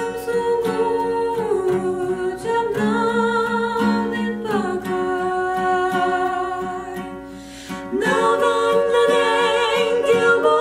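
Two women singing a Kuki song in harmony over a strummed acoustic guitar, on long held notes. The voices dip briefly and come back louder about eight seconds in.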